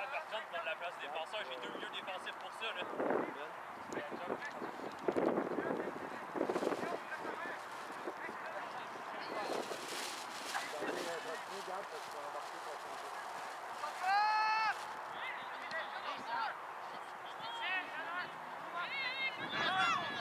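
Indistinct shouts and voices of players and spectators carrying across an outdoor soccer field, with one short, clear high-pitched shout about fourteen seconds in.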